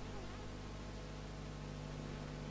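A steady low hum or buzz under an even hiss, unchanging throughout.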